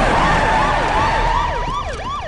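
Police car siren in a fast yelp, its pitch sweeping up and down about three to four times a second.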